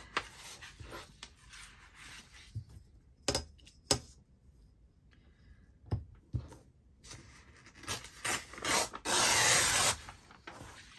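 Paper being handled on a cutting mat, with a few sharp knocks from a metal ruler. Near the end a sheet of printed paper is torn along the ruler's edge in one rasp lasting about a second.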